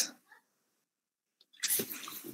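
Mostly silence, then a short, breathy vocal sound from a person starts near the end.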